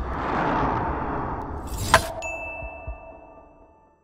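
Logo-sting sound effects: a rushing whoosh that swells and dies away, then a sharp metallic hit with a ring about two seconds in, followed by a high ringing tone that fades out.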